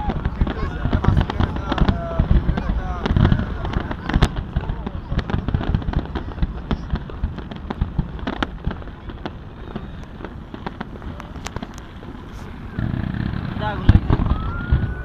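Aerial fireworks bursting: a rapid string of sharp bangs and crackles, thick in the first half and thinning out later, with a louder rumble of bursts starting near the end.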